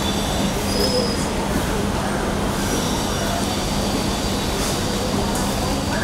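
Steady, loud street noise with a constant low hum and a few brief high-pitched squeals.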